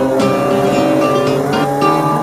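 Stock car engines running on the track, a couple of rising and falling pitch sweeps as cars pass, heard under background music of steady held notes.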